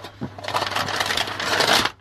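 A sheet of tracing paper rustling and crackling as it is handled and turned around on a cutting mat, a continuous crinkle lasting about a second and a half.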